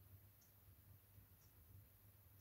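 Near silence: a faint low hum with a faint tick about once a second.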